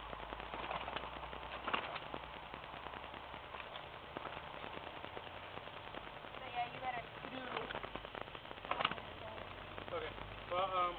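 Outdoor background noise with scattered short clicks and faint, distant voices.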